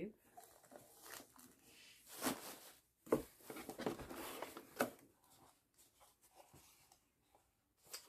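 Cardboard boxes being handled: faint rustles, then louder scraping and rustling of cardboard with a couple of sharp clicks between about two and five seconds in, then near silence.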